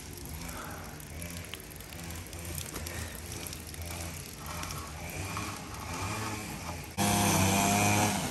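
A small engine runs steadily in the background, with a few light clicks and scrapes as a metal sheet is handled. About seven seconds in, the engine sound abruptly becomes much louder and holds steady.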